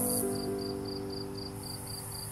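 A cricket chirping in an even rhythm, about four chirps a second, over slow held music chords that fade away. A high insect hiss stops just after the start and comes back near the end.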